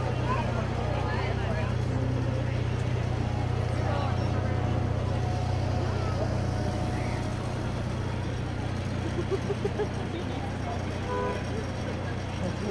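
A steady low engine hum, with indistinct chatter of people around it.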